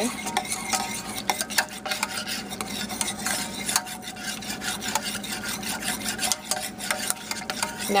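A whisk beating hot cream and milk in a stainless steel saucepan: quick, uneven clicks of the whisk against the pan over the swish and slosh of the frothing liquid.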